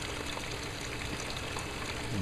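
Steady trickle of running water, an even hiss with no distinct strokes.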